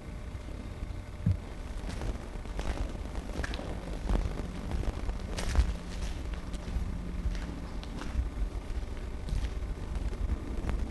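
Irregular footsteps and small knocks on a debris-covered concrete floor, over a steady low rumble.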